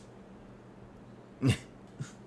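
A single short vocal burst about a second and a half in, over faint room tone.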